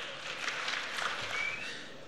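Audience applauding in a large hall, steady and slowly fading.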